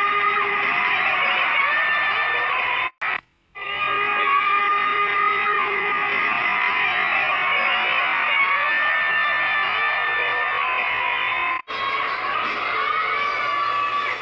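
Music mixed with a crowd of fans screaming and cheering, heard through a phone recording. Two short drop-outs, about three seconds in and near the end, break it.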